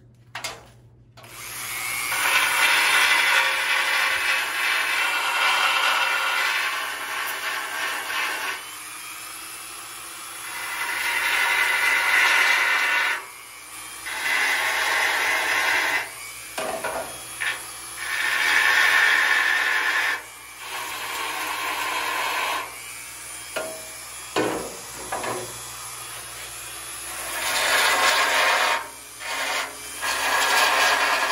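Power belt file (narrow belt sander) grinding paint and primer off a steel frame rail down to bare metal for plug welds. It runs in passes of a few seconds each with short pauses between.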